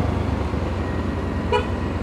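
Steady road, engine and wind noise from a moving motorcycle, with one brief horn toot about one and a half seconds in.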